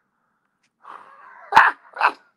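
A man bursting into laughter: a thin, wheezy high-pitched sound starts about a second in, then comes a sharp burst of laughter, the loudest sound, and a second burst at the end.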